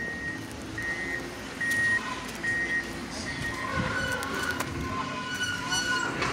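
A vehicle's reversing alarm beeping: about five short, high beeps evenly spaced under a second apart, which die away after about three seconds.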